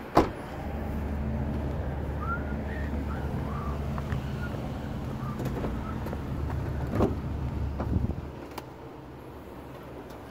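Low steady rumble of a vehicle engine running, with a sharp knock just after the start and car-door clunks about seven and eight seconds in as a car door is unlatched and opened. The rumble stops about a second before the end.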